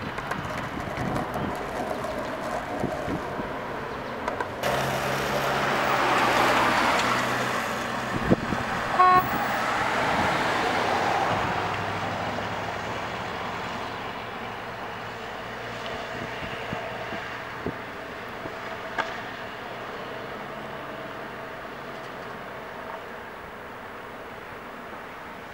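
Street traffic: a car passes, its engine and tyre noise swelling and then slowly fading, with a short car-horn toot about nine seconds in.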